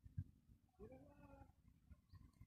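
Near silence: faint outdoor ambience, with one faint short pitched call about a second in.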